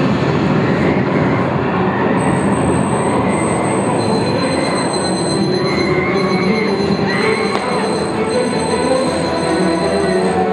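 Pyrotechnic fountains burning: a loud, steady hissing rush, with thin high whistling tones joining after about two seconds.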